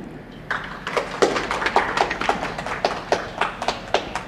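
Scattered hand claps from a small group, uneven, several a second, starting about half a second in.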